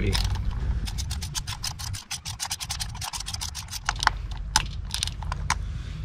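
A 3/8-inch-drive ratchet clicking rapidly, about ten clicks a second, as it swings back and forth on a socket extension, tightening a new spark plug into the engine's cylinder head. The clicking thins out to a few separate clicks for the last couple of seconds, as the plug is brought a quarter to half turn past snug.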